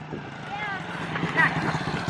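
Small single-cylinder four-stroke engine of an SSR 70 pit bike running steadily at idle as it lies in the grass after a crash.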